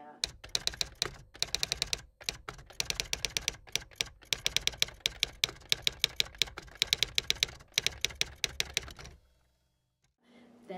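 Typewriter keys clacking in quick runs of about eight to ten strokes a second, with short pauses between runs, as a typing sound effect. It stops about a second before the end.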